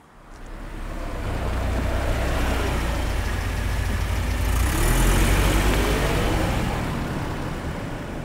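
An SUV driving past: its engine and tyre noise builds up, is loudest about five seconds in, then eases away.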